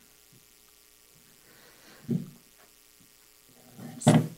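Low steady electrical hum on the meeting-room sound system, broken about halfway through by a single dull thump and by another starting right at the end: bumps on the table microphone as people step up to it.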